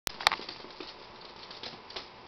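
A Bichon Frise's claws tapping lightly on a hardwood floor as he moves about, a few scattered clicks, with one sharp click just after the start.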